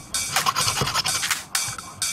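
Hacksaw blade cutting through a coconut shell in a quick series of rasping back-and-forth strokes, about two a second.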